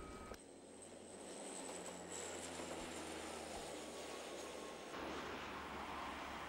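A small airliner's engines during takeoff: a steady rushing engine noise with a faint high whine that drifts slightly lower over the first two seconds.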